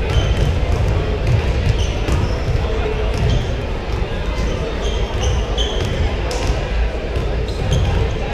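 Several basketballs bouncing on a hardwood gym floor, with short sneaker squeaks, over the steady chatter of a crowd in a large, echoing gym.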